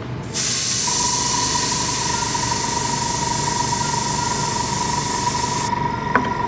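Airbrush spraying: a loud steady hiss of air and paint that starts just after the beginning and cuts off just before the end. Beneath it, from about a second in, a steady high whine from the Sparmax airbrush compressor runs on after the spray stops.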